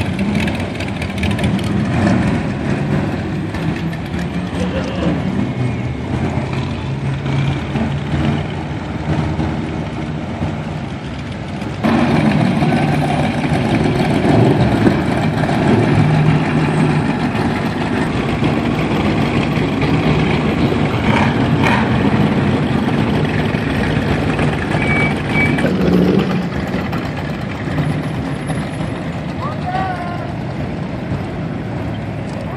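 Engines of classic cars cruising slowly past one after another, a steady low rumble that gets suddenly louder about twelve seconds in.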